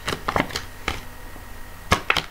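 Tarot cards being handled as a card is pulled from the deck: a handful of sharp card clicks and flicks, the loudest near the end.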